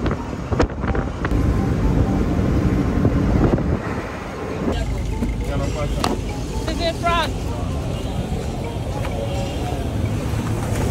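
Road noise from a moving vehicle, a steady low rumble with rattles and knocks, for the first half. It then changes to street bustle with indistinct voices, one voice briefly raised a little past the middle.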